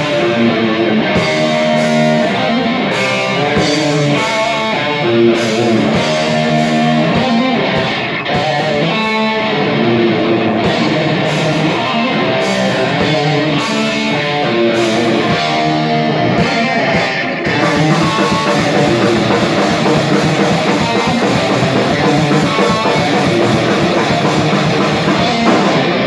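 Speed metal band playing live: a distorted electric guitar riff over a drum kit, loud and steady. About seventeen seconds in, the cymbals fill in without a break.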